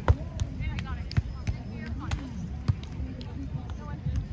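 A beach volleyball struck hard by an open hand in a jump serve: one sharp slap just after the start. Several fainter slaps of the ball being played in the rally follow, over distant voices.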